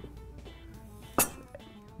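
A metal spoon clinks once against cookware about a second in, while tomato sauce is spooned onto a tray of pide. Soft background music plays under it.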